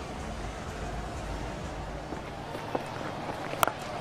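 Steady murmur of a cricket ground's crowd, with a single sharp crack of the bat striking the ball near the end.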